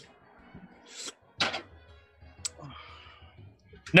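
Faint background music in a pause between lines, with a few short breath-like noises and a brief click about two and a half seconds in.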